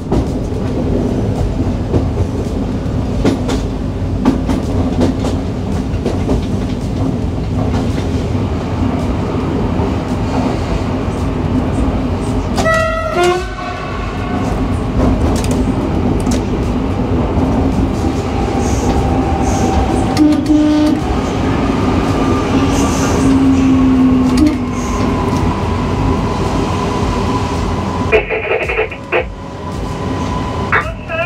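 Cab of a Newag Impuls electric multiple unit running into a station: a steady running rumble with the hum of the traction equipment. There is a short pitched sound about 13 seconds in, and whining tones as the train slows.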